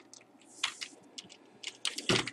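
Computer keyboard keys clicking as code is typed: about eight separate keystrokes at an uneven pace.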